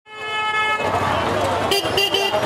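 Busy market street traffic: a vehicle horn sounds one steady tone for most of a second, then street noise with voices, and a second short horn toot near the end.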